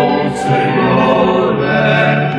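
A choir singing a Portuguese hymn over instrumental accompaniment, holding long sustained notes, with a sung 's' about half a second in.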